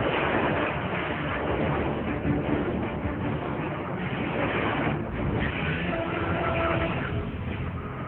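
Film battle sound effects: a loud, continuous roar and rush of a missile volley launching and flying, with a few brief held tones later on.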